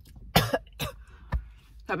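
A woman clearing her throat twice in short bursts, then a single soft thump, just before she starts to speak.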